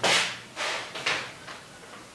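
Felt-tip marker stroking on a whiteboard: three short swipes about half a second apart, the first the loudest.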